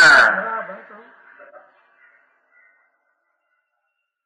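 A man's voice stretching out the end of a spoken word and fading away within the first second or so, then near silence for the rest.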